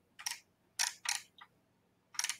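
Computer mouse scroll wheel clicking in a few short ratcheting spins, loud and cricket-like, as a code file is scrolled up and down.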